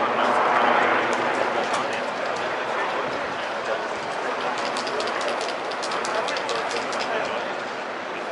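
Indistinct chatter of many voices mixed with street noise, with no words standing out. A quick run of sharp clicks or taps comes about five to seven seconds in.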